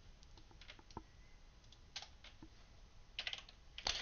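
Faint keystrokes on a computer keyboard: scattered single taps, then a quick run of several keys a little past three seconds in.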